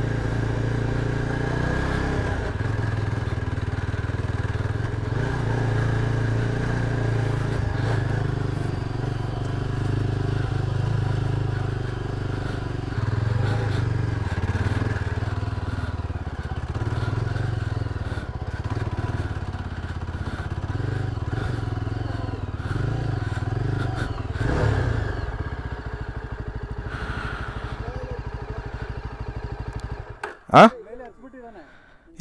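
Single-cylinder adventure motorcycle engine pulling in a low gear over a rocky dirt trail, the throttle opening and closing, with clatter from the rough ground. The engine note falls away near the end as the bike slows.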